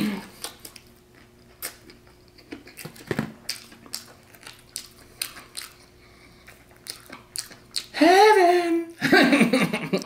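A person eating crispy fried food, with soft chewing and many small crunches and mouth clicks. About eight seconds in comes a hummed 'mmm' that rises and falls, and a moment later a brief burst of voice.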